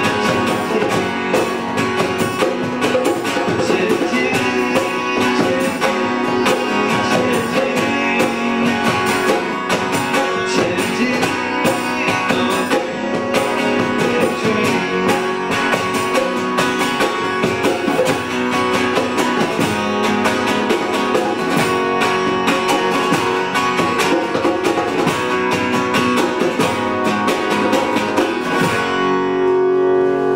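Acoustic guitars strummed steadily as a live song plays, closing on a held, ringing chord near the end.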